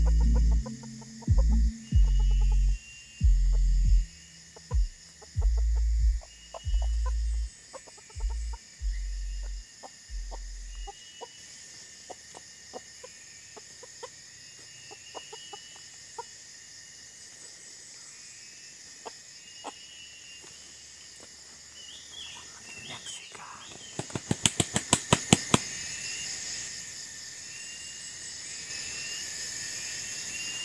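Red junglefowl rooster clucking, then beating its wings in a quick run of about a dozen sharp claps that grow louder, about two-thirds of the way in. A steady insect buzz and repeated short bird chirps go on throughout, and low rumbling bumps come in the first ten seconds.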